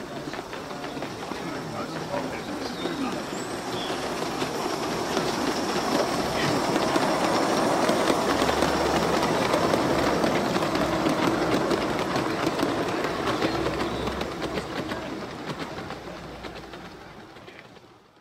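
Gauge 3 model goods train, a battery-electric saddle-tank engine hauling wagons, rolling along raised garden-railway track. Its wheels make a rumble with faint clicks that swells as it passes close by, loudest about halfway through, then fades away near the end.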